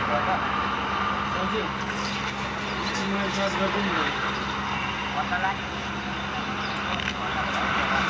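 Busy street noise: indistinct voices mixed with motor traffic, over a steady low hum.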